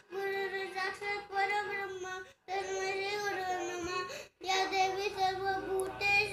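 A young boy chanting a Sanskrit shloka in a sung, near-monotone voice. He breaks off briefly twice, about two and a half and four and a half seconds in.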